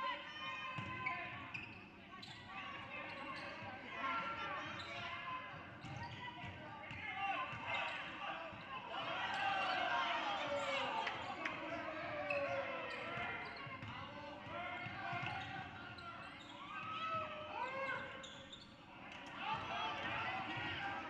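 Basketball being dribbled on a hardwood gym floor during play, with irregular thuds, under players, coaches and spectators calling out.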